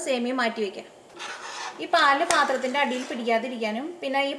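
A woman talking while a metal spoon stirs milk in a steel pan, with a scraping rustle about a second in and a single sharp clink of the spoon against the pan a little after two seconds.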